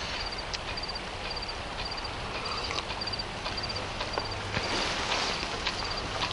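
Crickets chirping steadily at night: a high, pulsed chirp repeating about twice a second, with a few faint clicks.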